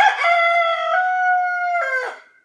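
A rooster crowing once: one long cock-a-doodle-doo that steps slightly higher in pitch about halfway through and falls away at the end.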